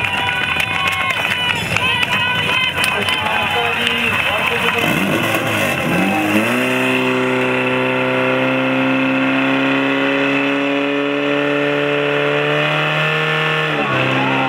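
Portable fire pump engine revving up about five seconds in, then running hard at a steady high pitch that creeps slowly upward as it pushes water through two charged hose lines; its pitch drops sharply near the end. Before the engine comes up, spectators shout and cheer.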